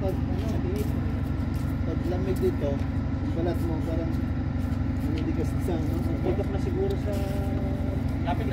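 People's voices talking on and off over a steady low rumble that holds through the whole stretch.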